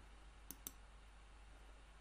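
Two quick computer-mouse clicks a fraction of a second apart, otherwise near silence.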